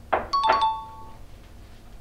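Smartphone message notification: a short knock followed by a bright chime that rings for under a second, signalling an incoming message.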